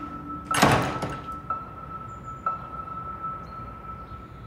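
Drama soundtrack: a sudden noisy hit about half a second in, then a single high note struck again about once a second and held between strikes.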